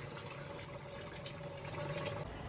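Pork curry simmering in a pot: a faint bubbling over a steady low hum.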